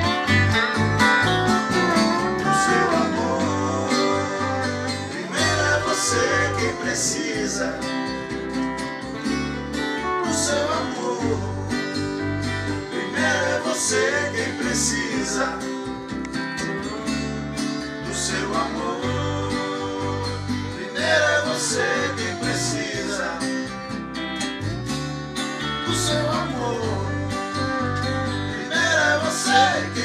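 Country-flavoured band playing an instrumental passage: a steel guitar plays a sliding, gliding lead over strummed acoustic guitar, electric guitar and bass.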